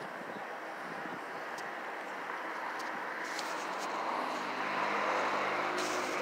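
A road vehicle on the street, its engine and tyre noise slowly growing louder as it approaches.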